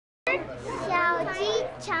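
Children's voices talking, a young girl's voice close by.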